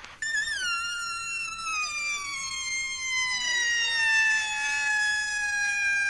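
Siren-like electronic tone in a dance-music DJ mix: it warbles briefly at the start, then glides slowly and steadily downward in pitch. Fainter sweeps cross beneath it in the middle.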